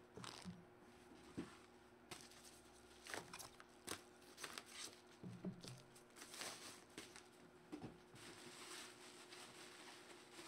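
Faint, irregular rustling and crinkling of bubble wrap and padded paper envelopes being handled in a cardboard box, with scattered small crackles.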